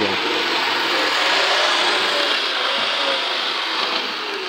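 N scale model locomotive running along the layout's track at full throttle, its small motor and gears giving a steady whir.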